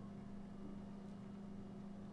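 A faint steady low hum, with a pen scratching lightly on paper while writing.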